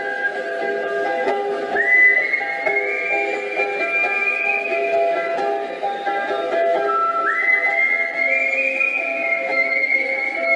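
Ukulele played live with a whistled melody over it: long held whistle notes that slide upward about two seconds in and again about seven seconds in.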